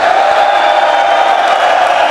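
Large crowd cheering and shouting together in one long, loud, held yell.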